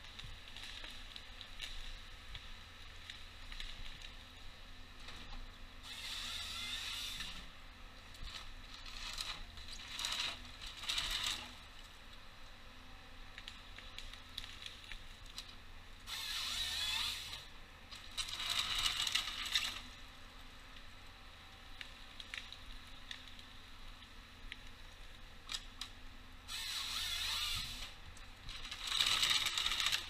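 Timberjack 1470D forest harvester processing a spruce stem: a steady low diesel hum under about seven one-to-two-second bursts of scraping and crackling from the harvester head as it feeds the stem through and strips the branches, the bursts mostly coming in pairs.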